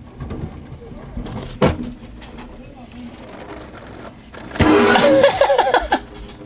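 Water from a garden hose spraying against a window and into a window well, with a single knock about a second and a half in. Near the end a loud voice rises over a burst of rushing spray.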